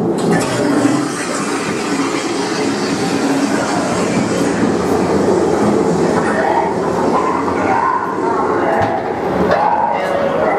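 Ghost-train car of a dark ride rolling and rattling steadily along its track.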